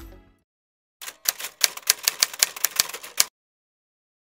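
A quick, uneven run of sharp clicks like typing on keys, starting about a second in and lasting about two seconds, then stopping.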